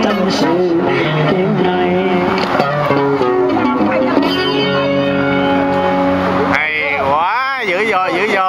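Street band music: an amplified acoustic-electric guitar playing with a singing voice. About six and a half seconds in, the low accompaniment drops out and the voice is left swooping up and down.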